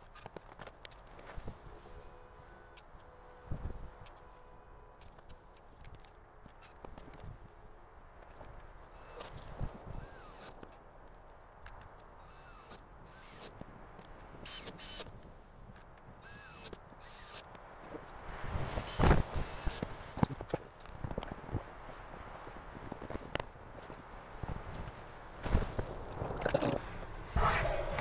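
Scattered faint knocks, taps and footsteps of someone moving about and handling things. They grow louder and busier in the second half, with the loudest knocks about two-thirds of the way in and again near the end.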